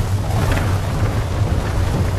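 Intro sound effect: a loud, steady rumble with a noisy hiss over it, like a storm.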